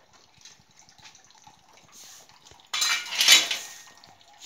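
Steel pots and pans being washed by hand with water: faint clinks at first, then a loud burst of clanking and splashing about three seconds in, lasting under a second.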